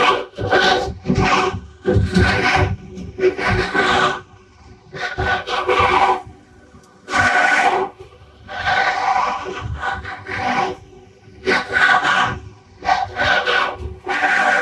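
About a dozen rough scraping, crunching bursts come at an irregular pace, each half a second to a second long, like Minecraft block-breaking sounds. The audio runs through a phaser-type effect that lays a steady ringing colour over every burst.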